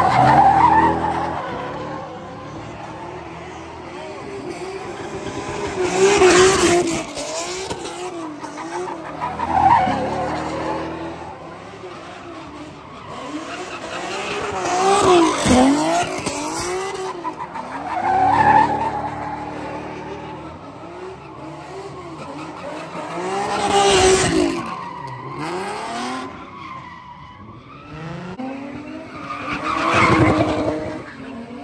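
Cars doing donuts in turn: engines revving up and down over and over while the rear tyres squeal and skid. The sound swells loudest every few seconds as a car swings past.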